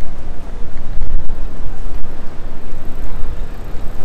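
Steady city street noise: an unbroken traffic rumble with the hum of people on the pavement.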